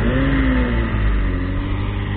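A car engine running close by, a steady low rumble. Its pitch lifts and falls slightly in the first half second, then holds.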